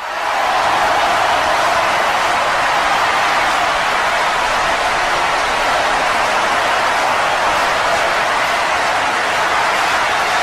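Loud, steady crowd-noise sound effect, an even roar with no break or rhythm.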